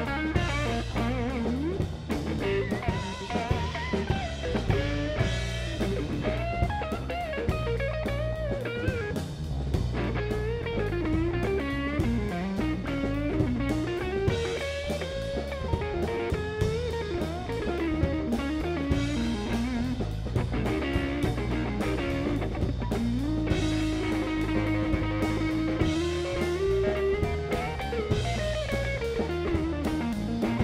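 Blues electric guitar solo on a Telecaster-style guitar, a lead line full of string bends, over the band's drum kit. Near the end one long note is held and then bent up a step.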